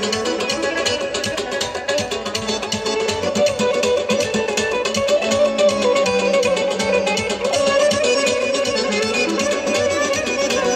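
Live folk dance music from a band amplified through loudspeakers: a plucked-string melody over a steady drum beat.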